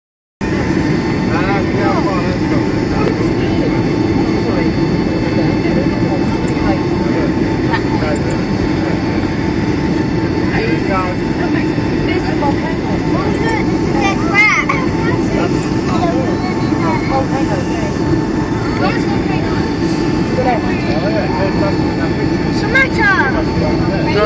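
Steady cabin roar of a jet airliner descending on approach with flaps extended, heard from inside the cabin at a window seat, with a few faint, steady high whining tones over it.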